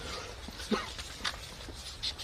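Footsteps of several people walking on stone paving, with a few sharp clicks. The loudest is a short sharp sound about a third of the way in.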